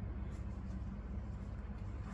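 A steady low hum with faint, brief rustles of hands rubbing a poodle's curly fur.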